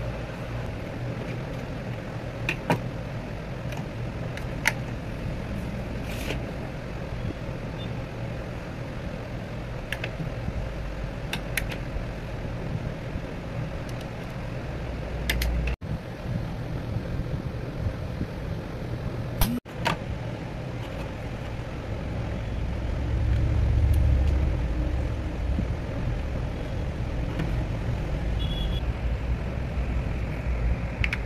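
Small plastic toy-house parts being handled and fitted together, giving a few sharp light clicks, over a steady low background hum.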